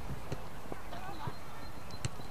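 A football being kicked and dribbled on artificial turf: a few dull knocks of foot on ball, the last and loudest near the end, with children's voices in the background.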